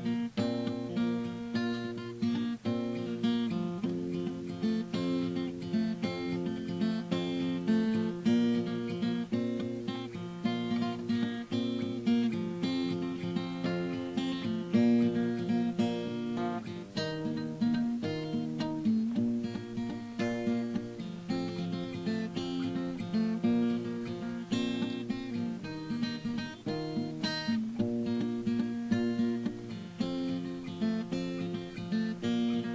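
Acoustic guitar fingerpicked in a country style, played as a steady run of plucked notes over simple open chords starting on C. The fingers pick in reverse as well as forward across the strings, giving doubled notes.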